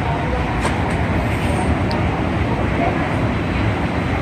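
Steady low rumble of outdoor background noise, even throughout, with no distinct events.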